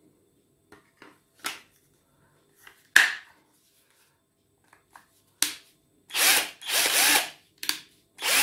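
Cheap Chinese cordless drill-driver: a new replacement battery pack is pushed into the handle with a few clicks, the loudest about three seconds in, then the drill's motor is triggered in two short runs of about half a second each, speeding up and slowing down, as the new battery is tested and works.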